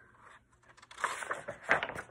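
Paper rustling and crackling as a picture book's page is turned by hand, starting about a second in after a brief hush.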